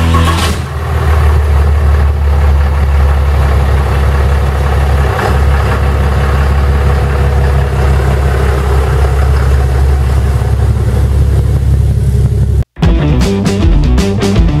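Pickup truck engine idling steadily, close to the microphone. It cuts off suddenly near the end, and rock music follows.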